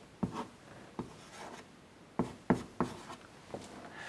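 Chalk writing on a blackboard: a string of sharp taps and short scratches as symbols are chalked in, the loudest taps coming in a quick group of three a little after two seconds in.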